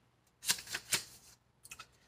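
Pages of a small paper guidebook flipped with the thumb: a few quick papery rustles, three close together about half a second in and two faint ones near the end.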